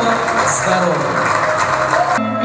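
People's voices mixed with music, dense and steady, with no single voice standing out.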